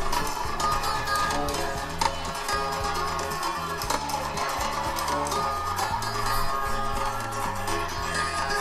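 Movie soundtrack music playing from an Acer Chromebook 15 Touch's built-in laptop speakers, with sustained low bass notes under a dense mid-range texture.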